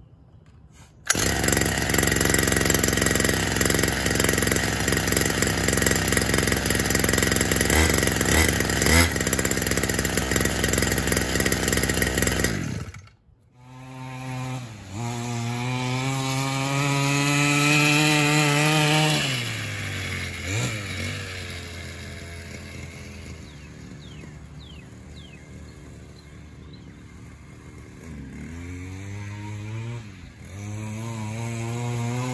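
49cc two-stroke dirt-bike engine running close by at a steady speed for about twelve seconds. After a break it revs up, the pitch rising and then falling, and grows fainter as the bike moves away. It picks up again near the end.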